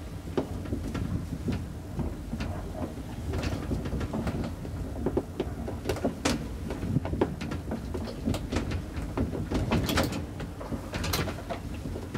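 Traction elevator car travelling in its shaft: a steady low rumble with frequent small clicks and rattles from the cab and its hinged car gate panels.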